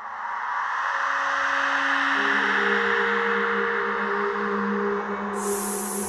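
Ambient electronic soundscape: a steady wash of noise with long, held bell-like drone tones that come in about two seconds in, and a short burst of high hiss near the end.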